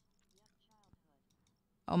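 A few faint, short clicks in near silence, with a faint voice underneath. A woman's loud "Oh" comes in near the end.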